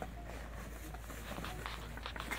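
Faint rustling and crinkling of plastic foam packing wrap and a cardboard box as a metal mounting bracket is lifted out of its packaging.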